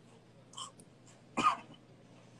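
A man's single short cough about one and a half seconds in, with a faint breathy sound before it.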